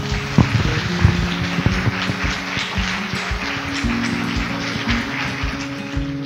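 Audience applause mixed with outro music with a steady beat and held low notes; the applause thins out near the end while the music carries on.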